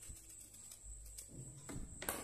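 Faint sounds of a small serrated knife slitting the peel of a raw green banana: a few soft clicks and low bumps.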